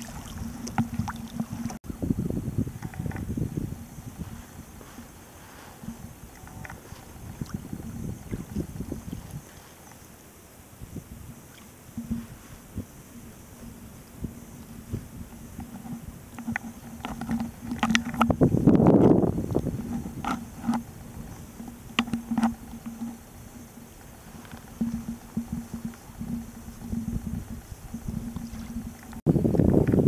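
Sea kayak under paddle: paddle strokes and water lapping and splashing against the hull over a low, uneven rumble of wind, with a louder rush about two-thirds of the way through.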